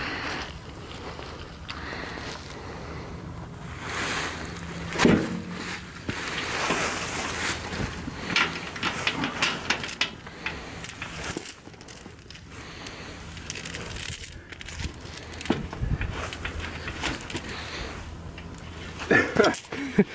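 Steel chain clinking and rattling, with scattered sharp metal knocks as the chain is worked under load to drag a steel trailer-frame bridge. A faint steady low hum runs underneath.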